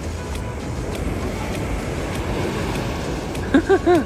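Sea water sloshing and rushing around a phone held at the surface in gentle surf, a steady rush. Near the end a man laughs in three short bursts.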